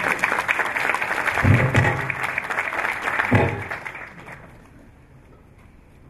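Audience applauding in a hall, a dense patter of clapping that fades out after about four seconds, with two low thuds partway through.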